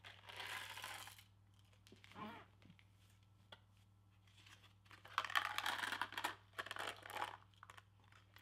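A mouthful of Bertie Bott's Every Flavour Beans tipped out of their small cardboard box, a brief rattle at the start, then eating noises at the mouth: a short muffled throat sound about two seconds in, and a few seconds of crackling and crinkling from about five seconds in as he chews behind his hands and a paper napkin.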